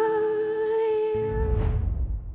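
Music: a long held sung note over a low sustained accompaniment tone, fading out about a second and a half in, overlapped by a low whoosh that dies away at the end.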